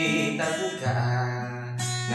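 Acoustic guitar strummed in an instrumental break between sung lines: a few chord strokes with low notes ringing on between them.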